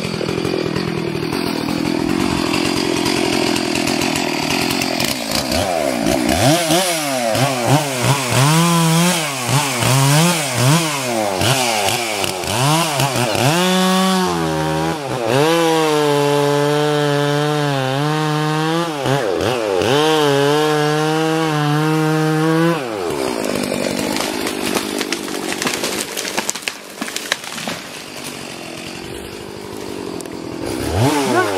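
Two-stroke chainsaw revving up and down in repeated bursts, then held at a steady high speed for several seconds as it cuts into the pines, before dropping off; a quieter, rougher running sound follows near the end.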